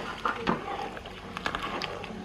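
A utensil stirring water and diced pumpkin in a cooking pot: a soft swishing of liquid with a few light knocks against the pot.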